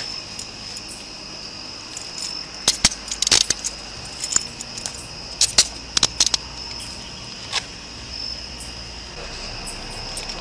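Steady high-pitched chirring of night insects, with clusters of sharp metallic clicks and jangles from officers' gear about three and six seconds in, and one more click near the end.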